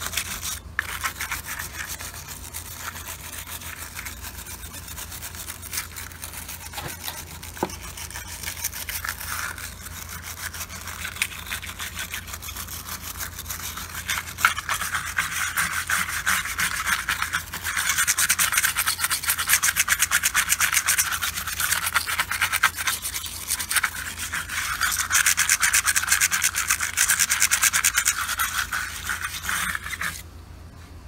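A hand brush scrubbing rapidly back and forth over the plastic top of a lead-acid truck battery, a continuous scratchy rubbing. It is cleaning dirt and corrosion off the case. The scrubbing gets louder and harder a little past halfway.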